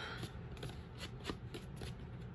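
Ink blending tool rubbed and dabbed along the edge of a sheet of paper: a quick run of soft scuffs and taps.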